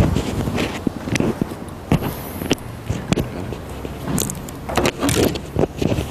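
Handling noise from a live clip-on microphone being passed from hand to hand and fastened to a shirt: irregular rustling and scraping with sharp clicks and knocks.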